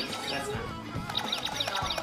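Background music, joined about a second in by a rapid run of short, high chirps repeating several times a second.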